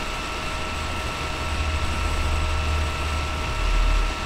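A steady low rumble with several faint, constant high-pitched tones, swelling slightly near the end.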